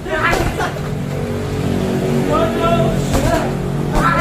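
Punches and kicks landing on heavy punching bags: a few sharp smacks, over a steady low drone, with a short vocal call partway through.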